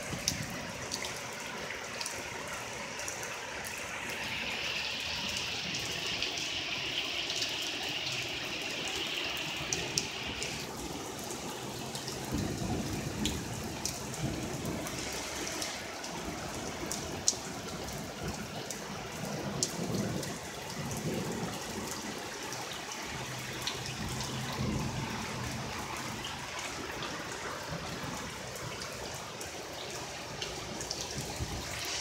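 Rain falling on a street and parked cars as a steady hiss with scattered sharp drop hits. A brighter hiss over the first several seconds stops abruptly about ten seconds in, and low rumbling comes and goes through the second half.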